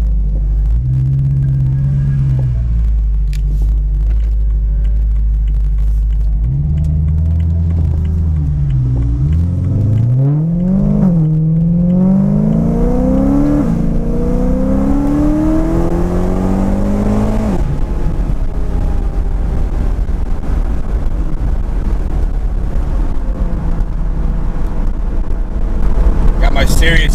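Supercharged BMW M3 engine and exhaust heard from inside the cabin under way. From about ten seconds in the engine pitch climbs three times with short drops between, as it pulls through the gears, until it stops rising about eighteen seconds in. After that the engine and road drone stay steady.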